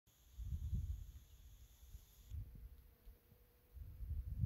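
Wind buffeting the microphone in faint, irregular low rumbling gusts, strongest in the first second and rising again near the end.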